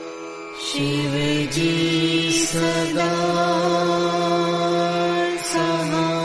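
Devotional mantra chanting in long held notes over a steady instrumental drone. The voice comes in about a second in, with short breaks between phrases.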